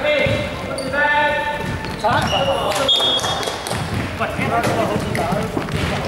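Basketball being dribbled on a hardwood court, a run of repeated ball bounces, with players' voices in the hall.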